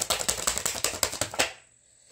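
A tarot deck being shuffled: a fast flurry of card clicks that stops about one and a half seconds in.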